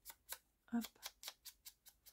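Foam-tipped ink-blending tool dabbed quickly against the edge of a paper petal, making light, dry taps about five a second.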